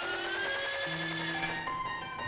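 Recorded acoustic piano playing back clean, with no distortion, since the tube processing is bypassed. A few long held notes ring, with a higher tone sliding slowly up in pitch above them.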